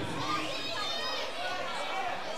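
Crowd chatter: many voices talking over one another at a steady, moderate level, with no single voice standing out.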